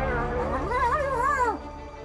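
Spotted hyena calls: wavering, whining cries that rise and fall in pitch, breaking off about a second and a half in, over background music.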